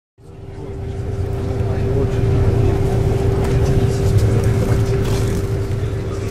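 Steady low rumble of a moving bus heard from inside, with a constant droning tone over it, fading in at the start.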